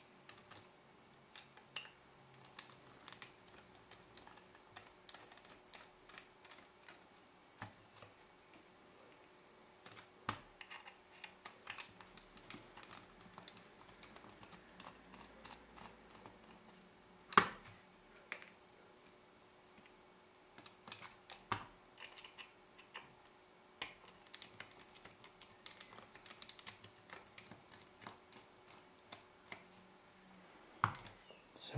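Faint, irregular small clicks and ticks of a precision screwdriver working the tiny screws out of a Canon EF-S 17-85mm zoom lens's metal bayonet mount, with light handling taps on the lens. One sharper knock comes a little past halfway.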